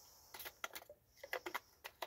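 Faint, irregular clicks and ticks, about a dozen in two seconds, from hands working a gas chainsaw's plastic controls and housing while it is readied to start.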